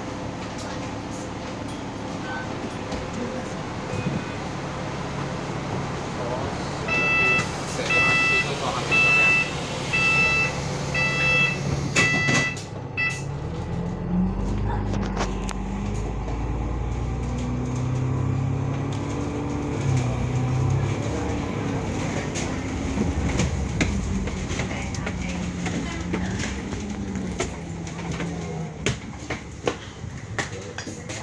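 Inside an Alexander Dennis Enviro500 MMC double-decker bus, the door-closing warning beeper sounds about eight times, roughly one and a half beeps a second, while the doors close. Then the bus pulls away, its engine note rising and dropping several times as it accelerates.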